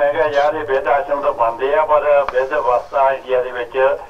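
Speech only: one person talking without a break.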